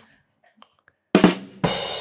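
Drum-kit rimshot sting, the 'ba-dum-tss' punchline effect: two quick drum hits a little over a second in, then a cymbal crash that rings and fades.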